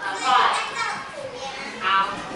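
Children's voices in a classroom: pupils talking and calling out over one another, with a louder voice just before the end.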